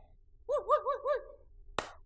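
A high-pitched voice giving four quick rising-and-falling syllables in a row, followed near the end by a single sharp click.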